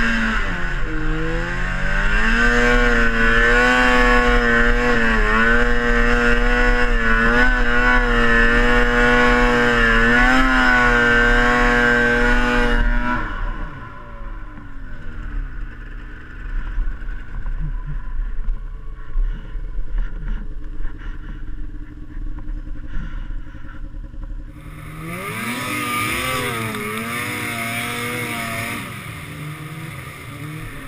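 Polaris IQ snowmobile engine held at high revs with a steady high whine that wavers slightly; about thirteen seconds in the throttle comes off and the pitch falls. It runs quieter with some clatter for a stretch, then revs up again near the end and falls back.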